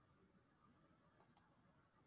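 Near silence with two faint computer mouse clicks close together a little over a second in.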